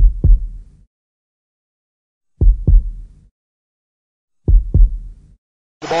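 Heartbeat sound effect: three slow, deep double thumps, about two seconds apart, with silence between. Just before the end, noisy stadium broadcast audio cuts in.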